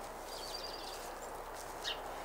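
Faint, steady outdoor background with a bird giving a thin, high, rapid chirping series about half a second in.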